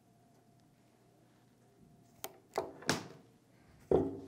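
Wire cutters closing on and snipping through RG6 coaxial cable: a sharp click a little past two seconds in, then two short crunching strokes, with a thunk at the very end.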